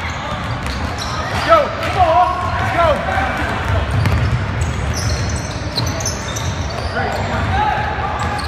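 Basketball game noise in an echoing gymnasium: indistinct shouts from players and spectators, a basketball bouncing on the hardwood floor, and short high sneaker squeaks as players run the court. The loudest shouts come about a second and a half to three seconds in.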